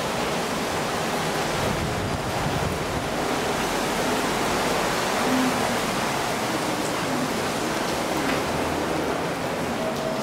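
Steady rushing room noise of an underground pedestrian passage, even throughout with no distinct sounds standing out.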